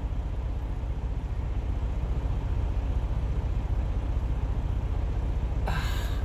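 An engine running steadily at idle, a low even rumble heard from inside a truck cab.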